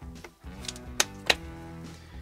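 Two sharp metal clicks about a second in, a third of a second apart, as the end cap is pushed onto a small starter motor's metal housing, over steady background music.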